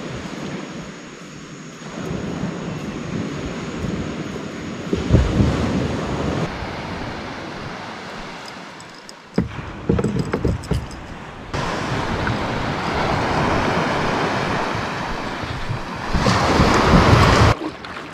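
Wind on the microphone and the wash of water and small waves, a steady rushing noise that changes suddenly several times, loudest near the end.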